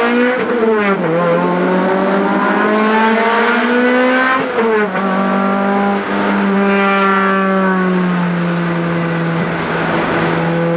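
Car engine heard from inside the cabin, accelerating through the gears. The revs climb and fall sharply at an upshift about half a second in, then climb again. They fall at a second upshift about four and a half seconds in, then settle to a steady cruise.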